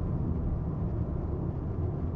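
Steady low rumble of a car's engine and tyres on asphalt, heard inside the cabin while driving at about 75 km/h.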